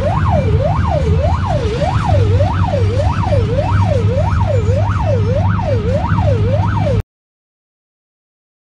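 A siren wailing rapidly up and down, about one and a half to two sweeps a second, over a low engine rumble. It cuts off suddenly about seven seconds in.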